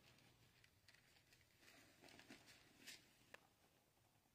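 Near silence: room tone, with a few faint soft rustles in the middle and one small click a little after three seconds.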